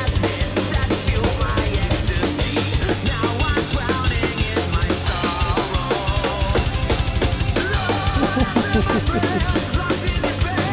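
Fast power-metal drum cover played over the band's recording: a rapid, steady double-bass kick drum pattern with cymbal crashes, and a wavering lead melody over it in the second half.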